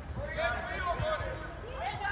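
Several voices calling and talking at once, with no clear words, over the open-air background of a football pitch.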